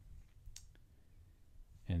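Two faint clicks about a quarter of a second apart, roughly half a second in; a man's voice begins near the end.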